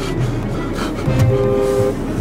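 Background music with a steady low beat; a little over a second in, a car horn sounds one two-note blast lasting under a second.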